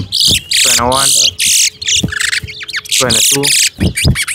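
Caged towa-towa (chestnut-bellied seed finch) singing competition song: short, high, twittering song phrases repeated in quick succession.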